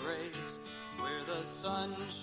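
Country-style instrumental music with plucked acoustic guitar and a bending melody line over it, with no singing.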